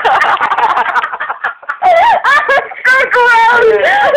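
High-pitched voices shrieking and laughing without words, in loud bursts with a brief lull about a second and a half in.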